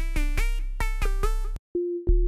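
Tone2 ElectraX software synthesizer preset playing a quick run of short pitched synth notes over a low bass. It cuts off about one and a half seconds in, and after a brief gap a single steady held note begins as the next preset loads.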